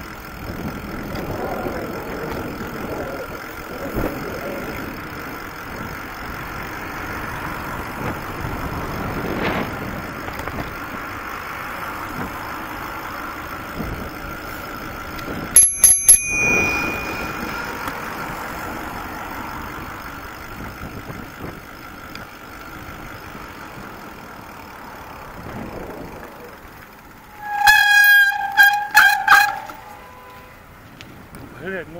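Riding noise from a bicycle: steady wind and tyre hiss. About halfway there is a short bell ring, and near the end a loud run of rapid horn beeps.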